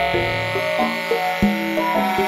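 Electronic art music: a dense weave of sustained pitched tones, each shifting to a new pitch every fraction of a second, with a sharp struck onset about one and a half seconds in.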